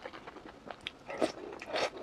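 Close-up chewing of a mouthful of fried eggs in tomato sauce with green peppers: a run of short, crisp clicks and wet mouth sounds, busiest in the second half.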